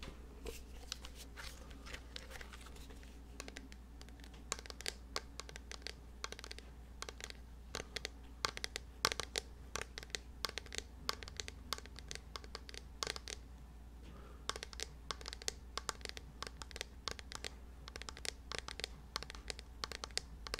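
Fingers tapping and scratching on a small hand-held object held right against the microphone: a dense, irregular run of crisp clicks and scratches.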